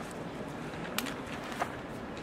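Steady hiss of a quiet classroom recording, with a faint low sound that rises and falls in the first second and two small clicks, about a second in and near the end.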